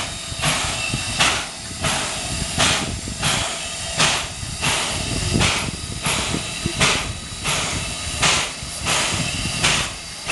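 A JNR Class C56 steam locomotive standing at idle, with a steady hiss of steam and a rhythmic burst of steam exhaust about every 0.7 seconds.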